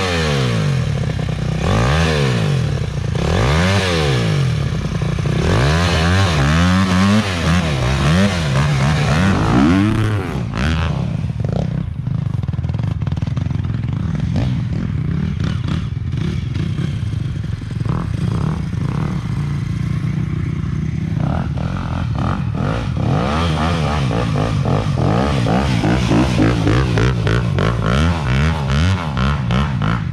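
Dirt bike engine revved again and again, pitch rising and falling, as its rear wheel spins in deep snow. From about ten seconds in the engine settles to a steadier note, and revving picks up again over the last several seconds.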